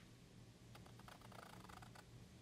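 Palette knife scraping and tapping thick, wet acrylic paint on a canvas. A faint run of quick scratchy clicks fills the second half, over a low steady hum.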